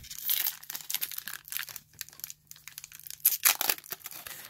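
Foil booster-pack wrapper crinkling and tearing in the hands, an uneven crackle that peaks in a louder flurry about three and a half seconds in.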